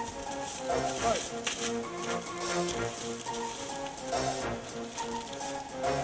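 Background film-score music: sustained keyboard-like notes over a steady light beat.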